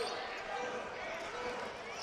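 Basketball arena sound during live play: a steady murmur from the crowd and the court, with a basketball being dribbled on the hardwood floor.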